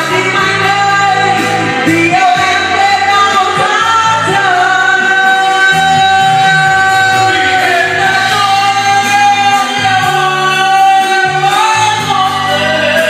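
Karaoke: a singer on a microphone over a loud pop backing track, holding long notes through the middle.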